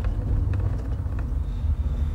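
Steady low rumble of a car's cabin: engine and road noise heard from inside the car, with a few faint clicks.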